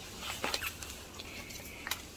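Faint handling sounds from gloved hands and metal tweezers at a gravel-topped pot: light rustling with two small sharp clicks, one about half a second in and one near the end.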